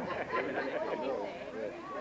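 Several people talking at once: overlapping, unintelligible chatter of a small group.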